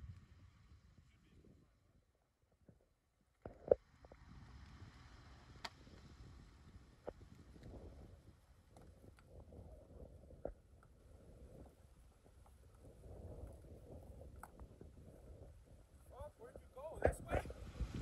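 Mostly quiet, with a few scattered knocks and clicks of rocks being set in place under a pickup's front tire; one sharper knock comes about four seconds in.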